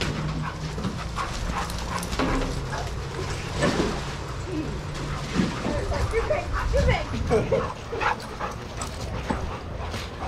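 Several dogs playing together, giving short barks and high calls that bend in pitch, most of them between about five and eight seconds in. A steady low hum sits underneath for the first half.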